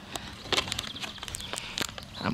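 Footsteps in grass: a few soft, irregular steps, with faint bird chirps in the background.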